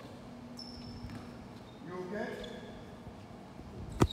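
Quiet gymnasium room tone with a faint steady hum, and a faint distant voice about two seconds in; the basketballs are held still, not dribbled.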